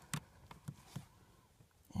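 A few light clicks and taps, the loudest just after the start, as multimeter test probes are set against fuse contacts.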